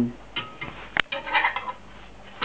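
Metal slotted spatula scraping under a pancake against a frying pan, with one sharp click of metal on the pan about halfway through, followed by a short rasp as the pancake is lifted.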